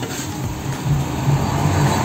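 Road traffic: a motor vehicle's engine running past, a steady low drone.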